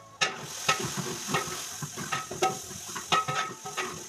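Onions frying in hot oil in a steel pot, with a spoon stirring and clinking against the pot two or three times a second.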